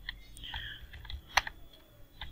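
Computer keyboard being typed on: a few scattered keystrokes, faint, with one sharper click about a second and a half in.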